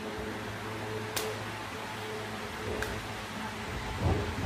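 Quiet steady low hum of room tone with two faint light clicks, about a second in and near three seconds, as ceramic floor tiles are shifted by hand on a concrete floor.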